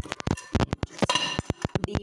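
Steel cake tin and ceramic plate clinking and knocking together as the tin is turned over onto the plate, a quick run of small clicks.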